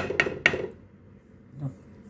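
A spoon knocking against a cooking pot, three quick knocks in the first half second, then quiet.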